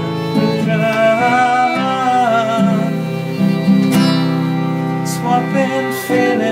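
Live acoustic band music: an acoustic guitar playing chords under a violin melody with vibrato.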